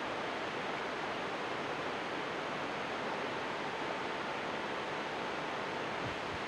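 Steady, even hiss of background noise on the studio sound, with a faint thin tone in the second half.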